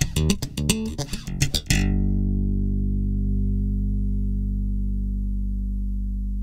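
Five-string electric bass with Bartolini MV52CBJD3 dual jazz pickups, swamp ash body and maple neck. A quick run of finger-plucked notes lasts about a second and a half, then a final low note is left to ring and slowly fades.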